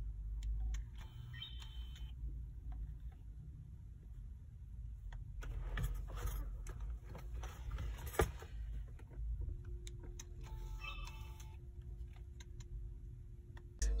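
Malfunctioning compact digital camera's lens motor whirring in short spells, about a second in and again near eleven seconds, with clicks and one sharp click about eight seconds in, as the stuck lens barrel tries to move: the camera has stopped working. A low rumble runs underneath.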